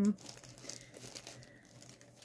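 A clear plastic bag crinkling faintly and irregularly as it is handled.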